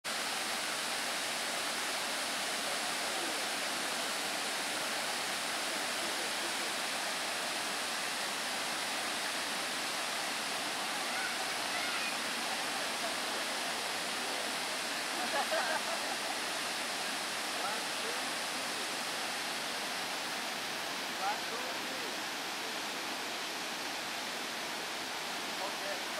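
A waterfall pouring over rock ledges, a steady, unbroken rush of falling water, with faint voices briefly about halfway through.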